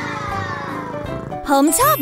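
A cat's long drawn-out meow, falling slowly in pitch for about a second and a half.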